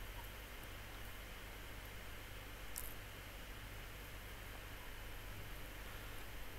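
Faint, steady background hiss of outdoor ambience with a low hum underneath, and a single faint short tick about three seconds in.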